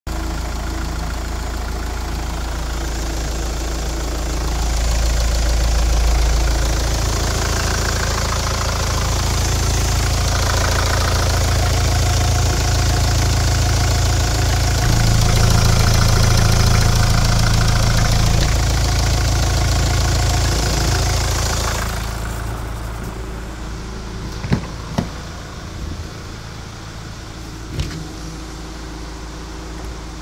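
Hyundai Santa Fe's CRDi diesel engine idling steadily, heard up close in the open engine bay with the oil filler cap off. About 22 seconds in the sound drops and turns duller, heard from inside the cabin, with a few sharp clicks.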